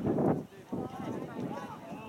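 Several voices calling and shouting across an outdoor soccer field during play, with a noisy rush at the start.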